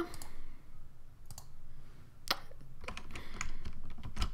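Scattered clicks of a computer mouse and keyboard as shapes are selected and filled in an image editor, the sharpest a little past the middle and a quick cluster near the end.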